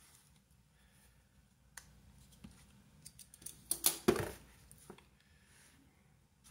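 Faint plastic clicks and taps from handling a Canon EOS M50 Mark II camera body and its EF-M 15-45mm kit lens. There is a single click a little under two seconds in, a few light ticks after it, and a quick cluster of sharper clicks just before four seconds.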